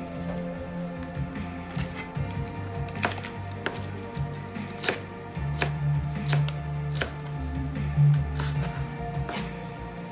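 Chinese cleaver chopping red cabbage on a plastic cutting board: irregular sharp knife strikes, most of them from about three seconds in, over background music with low held notes.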